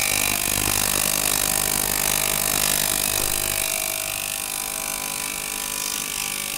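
Small tabletop ultrasonic cleaner running with a glass bottle clamped in its water bath: a steady electric buzz with a hiss over it, the low hum easing a little past halfway.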